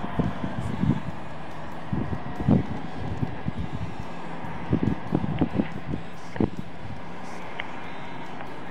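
Wind buffeting the camera's microphone: a steady rush broken by irregular low rumbling gusts every second or two.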